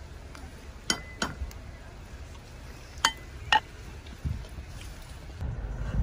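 Four sharp metallic clinks in two pairs, the first of each pair followed by a brief faint ringing tone, over a low background rumble.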